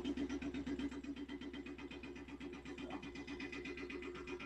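Steady machine noise, pulsing rapidly over a low hum, that sounds like some kind of drill, though its exact source is unknown.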